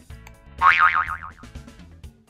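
Background music with a springy, wobbling cartoon 'boing' sound effect about half a second in.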